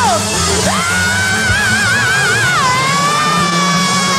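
Male rock singer's high, wailing scream on a live hard rock recording: the voice swoops up to a long held note with a wide vibrato, drops a step about two-thirds of the way through and holds on. Underneath is a steady low organ and bass backing.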